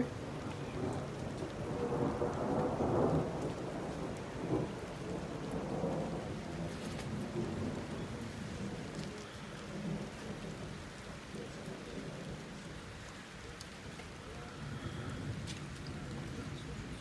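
Rolling thunder after a lightning strike, a low rumble that builds for about three seconds and then slowly fades, over steady rain falling.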